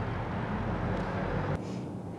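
Steady low rumble of a running vehicle, cutting off suddenly about one and a half seconds in.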